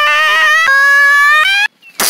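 A voice holding one long, high sung note that steps up in pitch twice and cuts off suddenly near the end.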